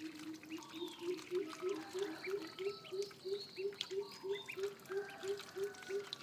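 A group of ducklings peeping, short high chirps coming thick and irregular, over a low call that repeats steadily about three times a second.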